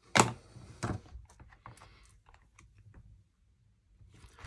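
Hard plastic clicks and taps as clear stamps are re-inked with an ink pad and the stamping platform's lid is closed. Two sharp knocks come in the first second, then lighter scattered taps that die away about three seconds in.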